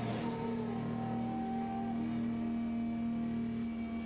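Electric guitars of a live rock band holding a sustained, droning chord with little drumming; the held tones change near the end as strumming starts to come back in.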